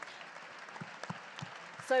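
Audience applauding, a steady sound of many hands clapping.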